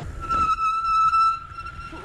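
Bicycle brake squeaking as it is applied: one steady high-pitched squeal with overtones. It is loudest in the first second, then fades but keeps sounding.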